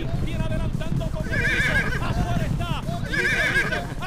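Horse whinny sound effect, heard twice: once about a second in and again about three seconds in, each a trembling, wavering cry.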